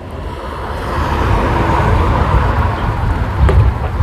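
A road vehicle passing: steady tyre and engine noise that swells over the first couple of seconds and then holds.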